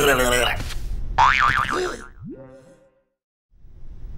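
A cartoon character's wordless, teasing vocal noises, then about two seconds in a cartoon boing effect: a quick upward glide settling into a wobbling tone that fades away.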